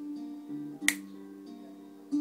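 Guitar playing a slow introduction, plucked notes ringing on, with a single sharp click about a second in.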